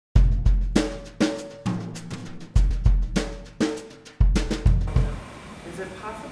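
Drum kit played on its own: deep kick-drum thumps alternating with higher, ringing drum strokes in an uneven pattern. It stops a little after five seconds in.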